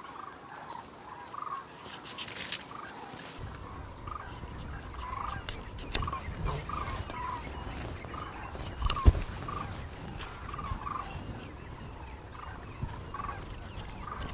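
Farm fowl calling over and over in short, gobble-like notes, with a few sharp snaps or clicks, the loudest about nine seconds in.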